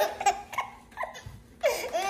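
Baby laughing in short bursts, then a louder, higher laugh near the end.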